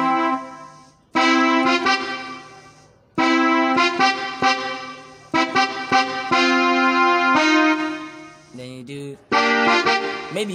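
Electronic arranger keyboard playing the song's intro in the key of F: a run of held chords, each struck and let ring before the next, with short pauses between phrases.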